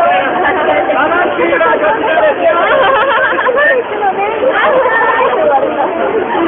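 Dense crowd of people talking close by, with many voices chattering over one another without a break.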